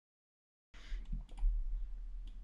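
Dead silence at first, then a few soft computer mouse clicks over faint room noise as an object is selected on screen.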